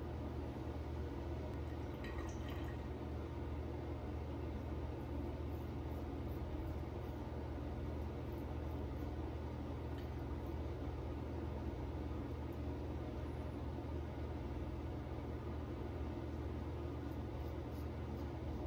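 Faint scratchy strokes of a double-edge safety razor cutting stubble through shaving-soap lather, over a steady low hum and hiss of room noise.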